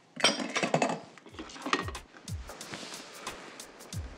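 Kitchen utensils and dishes clinking and knocking on a wooden counter, with a flurry of clicks in the first second and scattered knocks after, over faint background music.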